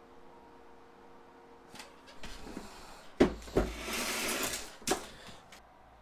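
Plastic lid of an Igloo 28-quart thermoelectric cooler being swung shut and closed. A faint steady hum for the first two seconds gives way to a sharp knock about three seconds in, a second knock, about a second of scraping plastic noise, and a final thump near five seconds.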